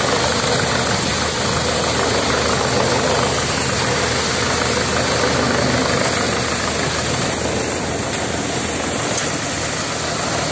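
Tractor-powered thresher running at working speed with crop going into its drum: a loud, steady machine noise with a low engine hum beneath it, easing slightly in the second half.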